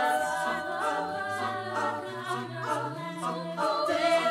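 Mixed a cappella choir singing in parts, voices holding chords over a low bass line that steps up in pitch about three seconds in.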